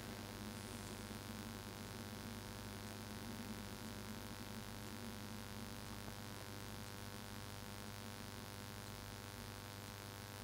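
Faint, steady electrical hum with a low hiss behind it.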